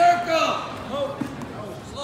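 Voices shouting loudly in a gymnasium during a wrestling bout, loudest at the start, over a steady crowd murmur, with a short dull thud a little over a second in.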